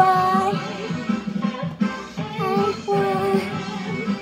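A children's song: a child's voice singing a melody of held notes over backing music.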